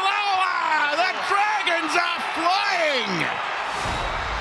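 A commentator's long, wordless excited shouts over a cheering stadium crowd as a try is scored, one cry falling away about three seconds in. A low rumble from the replay-transition graphic comes in near the end.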